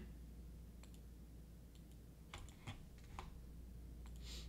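A handful of faint, short computer clicks, bunched between about two and three seconds in, over a low steady room hum.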